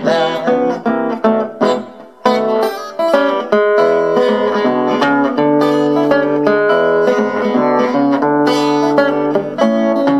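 Solo acoustic guitar playing an instrumental blues break in an upbeat hokum rhythm, picked melody notes over a bass line, with a brief pause about two seconds in before the playing grows denser.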